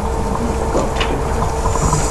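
Steady low rumble of room noise with a faint constant hum, and a single short click about a second in.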